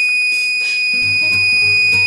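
HP 9825 KDP (keyboard-display-printer) buzzer sounding one steady, high-pitched beep held without a break. The buzzer is driven directly by the KDP chip, so this unbroken tone is bad news: a sign that the KDP chip may be dead.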